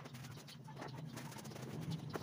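Light rubbing and handling noises as shoes are handled and wiped with a cloth, with a few soft scuffs, over a low steady hum.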